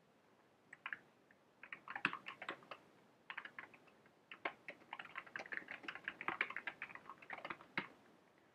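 Computer keyboard typing: a few keystrokes about a second in, then quick runs of keystrokes with short pauses.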